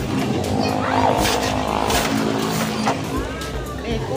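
A motorcycle engine running close by, a steady low hum, with voices around it.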